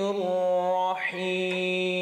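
A man reciting the Quran in Arabic in melodic tajweed style, holding long steady notes, with a brief break about a second in before the next held note.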